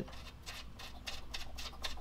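Light, irregular clicks and ticks of an Allen-head screw being turned by hand into a rubber grommet on an aluminum radiator shroud, fingers working the screw against the metal.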